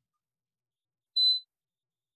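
A single short, high-pitched electronic beep about a second in, otherwise dead silence.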